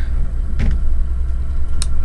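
Steady low rumble of a vehicle's engine and road noise heard from inside the cab as it drives along a wet road. A sharp click comes about half a second in, and a brief high chirp near the end.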